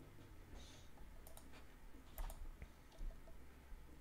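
A few faint, sharp clicks, some in quick pairs, over quiet room tone.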